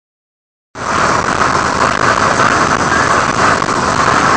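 Steady road and wind noise inside a moving vehicle, starting suddenly under a second in after a short silence.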